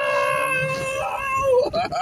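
A person's long, high-pitched excited cry, a drawn-out whoop held for about a second and a half that dips at the end. Short vocal sounds follow near the end, over a low rumble.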